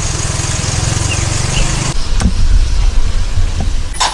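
A motor vehicle engine running close by: a steady low hum for about two seconds, then a deeper rumble with a couple of brief knocks.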